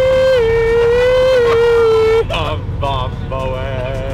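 A person singing one long, loud held note that steps down in pitch twice, then breaks off into shorter wavering sung phrases about two seconds in, over the steady low rumble of a moving bus.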